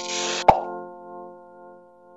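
Logo intro sound effect: a hissing swish, then a sharp pop about half a second in, followed by a ringing chord that fades away.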